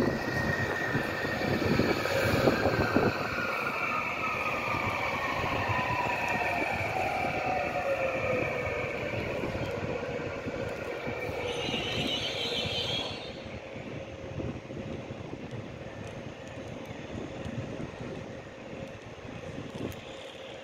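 Končar HŽ series 6112 electric multiple unit braking into a station. Its electric traction drive whine falls steadily in pitch over about nine seconds, over the rumble and clatter of its wheels on the track. About twelve seconds in there is a brief high-pitched noise as it comes to a halt, after which the sound settles to a quieter steady hum.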